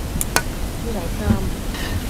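A metal serving utensil clicks sharply against a ceramic plate about a third of a second in, with a fainter click just before, over a steady low rumbling background noise. A brief voice sounds about a second in.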